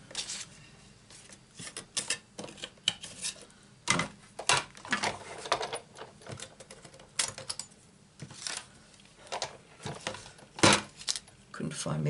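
Irregular clicks, taps and light clatter of plastic cutting plates and small metal dies being picked up and set down on a die-cutting machine's platform, with a sharper knock just before the end.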